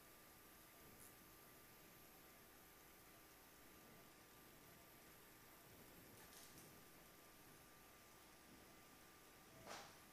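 Near silence: faint steady hiss with a thin, steady high tone, and one brief faint noise near the end.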